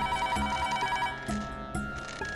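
Push-button desk telephone ringing with an electronic warbling trill. One ring lasts about a second, then pauses before the next.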